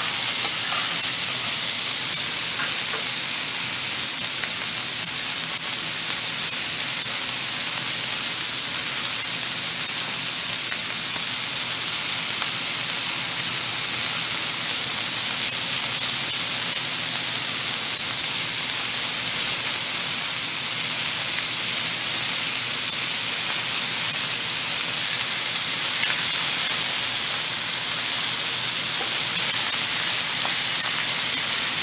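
Steady sizzling hiss of food frying in hot fat, unbroken and even throughout.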